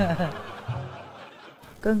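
Laughter fading away over about a second and a half after a spoken line ends. A woman's voice begins near the end.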